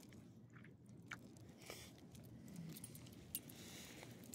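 Near silence with a few faint, scattered metallic clinks and ticks: a small dog's leash clip and tags jingling.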